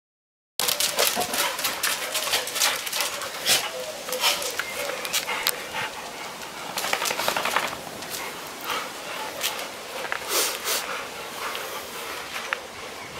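Two Bouvier des Flandres dogs playing rough together, a busy run of short sharp scuffling noises and dog sounds.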